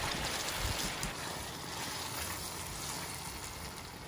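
Thick tomato stew cooking in an enamelled cast-iron pot while a spoon stirs it: a steady, soft hiss of frying and bubbling.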